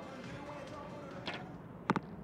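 A compound bow arrow shot: a faint snap about a second in, then about half a second later a sharp double crack as the arrow strikes the target. A steady low background of the outdoor venue underlies it.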